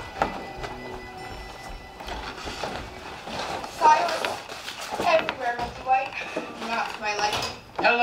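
Theatre musical accompaniment with held notes, then a young performer's voice over it from about four seconds in.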